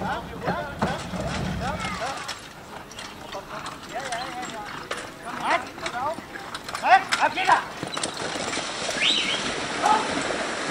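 A horse's hooves clopping as a single-horse driving carriage crosses a wooden bridge, with people talking in the background throughout.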